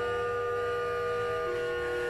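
Historic French classical pipe organ (Jean-Baptiste Micot, 1772) playing slow, sustained chords in several voices, with one note moving about one and a half seconds in while the others hold.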